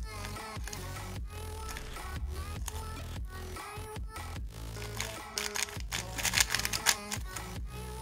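Background music with the rapid clicking and clacking of a 3x3 speedcube's plastic layers being turned, a MoYu RS3M 2020, as the Z perm algorithm is executed. The clicks come thickest in a quick run in the second half.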